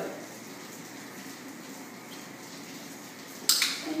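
Steady, even background hiss of room noise with no distinct event, then a short sharp hiss of breath or speech onset near the end.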